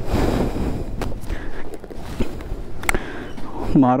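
Wind rumbling on the microphone, with a few sharp clicks and knocks spread through it and faint voices in the background.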